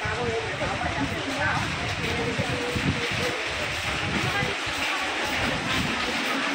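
Steady hiss of rain and passing traffic, with people's voices in the background.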